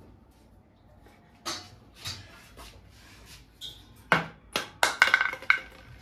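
Scattered sharp knocks and clinks of household objects, a few single ones spread apart, then a quick run of ringing clinks about five seconds in.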